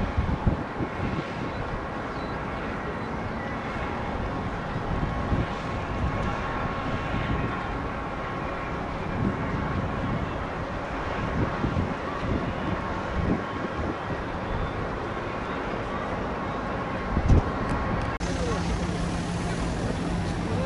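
Steady outdoor city background noise: distant traffic, with a brief knock near the end. Shortly after the knock the sound cuts to a different steady background with a low hum.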